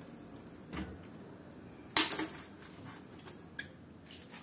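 Metal tools clinking as an adjustable wrench is lifted off a cassette lockring remover: a sharp double clink about two seconds in, with a faint knock before it and a couple of light ticks after.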